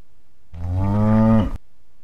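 A cow mooing once, about a second long, its pitch sinking slightly near the end before it cuts off abruptly.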